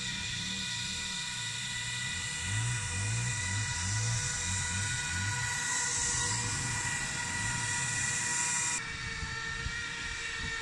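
The brushless electric motors and fans of an RC model Zubr-class hovercraft whining steadily at a high pitch as the craft runs over shallow water. The whine changes abruptly near the end.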